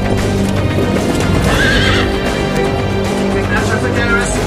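Polo ponies' galloping hoofbeats and a single horse whinny about a second and a half in, over background music.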